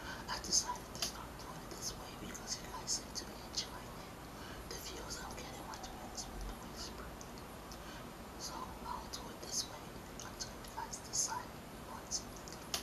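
A woman whispering close to a microphone: breathy, unvoiced speech with short hissing consonants, dropping quieter for a few seconds in the middle.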